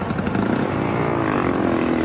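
Speedway motorcycles' single-cylinder methanol engines revving at the start line before a heat. The pitch climbs during the first second and then holds steady.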